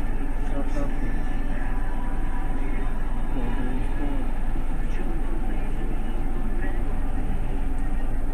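Steady engine drone of a 30-seat bus, heard from inside the driver's cab, with faint voices underneath.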